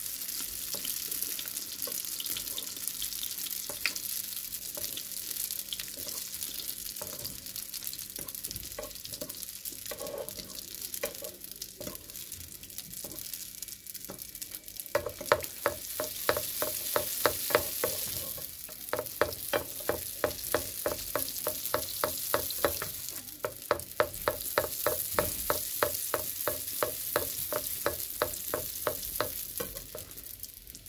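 Sfenj dough deep-frying in hot oil in a nonstick pan, a steady high sizzle. About halfway through, a utensil starts knocking against the pan in quick regular strokes, about three a second, as the frying dough is worked.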